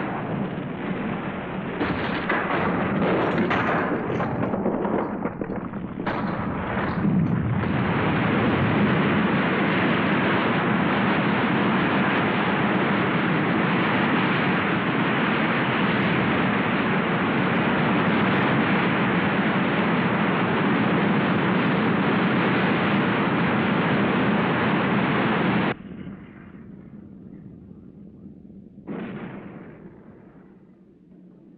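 Film explosion sound effects. A run of heavy blasts and rumbling comes first, then settles into a continuous loud roar that cuts off suddenly a few seconds before the end. After a quieter stretch, one more short blast follows near the end.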